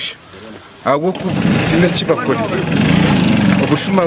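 A small engine running with a rapid, steady putter that sets in about a second in, heard under a man's voice.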